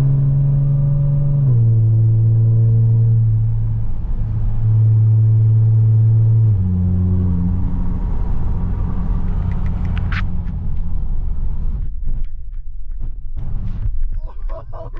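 Audi S4's supercharged 3.0-litre V6 heard from inside the cabin while driving. It gives a loud, steady drone that steps down in pitch twice, about a second and a half in and again about six and a half seconds in. From then on it settles into a lower road and tyre rumble.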